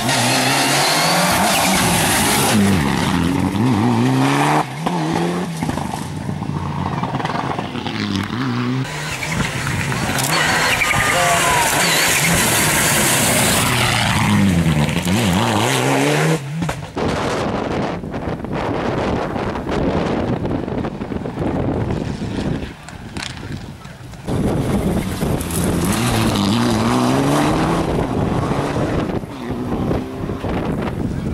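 Rally cars passing one after another at racing speed, their engines revving hard with the pitch climbing and falling through gear changes several times over.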